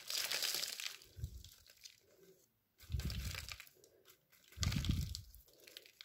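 An anthurium root ball, roots and loose potting soil, crunching and rustling as hands work it apart, in a few separate bursts with dull low thumps about a second, three seconds and five seconds in.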